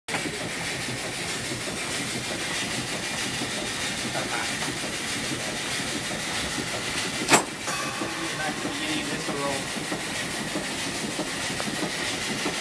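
Wurlitzer 125 band organ's mechanism running with no tune playing: a steady airy hiss with light mechanical clatter. One sharp click comes about seven seconds in.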